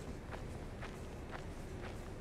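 Footsteps on a paved street, about two steps a second, over a steady low rumble.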